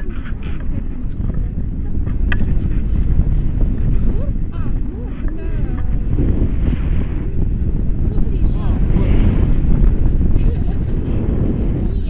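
Rushing airflow buffeting a selfie-stick action camera's microphone in tandem paraglider flight: a loud, steady, deep rumble, with brief faint voice fragments now and then.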